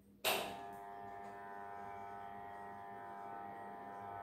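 A sudden loud burst about a quarter second in, then a steady buzzing, whistle-like tone that holds one pitch without changing.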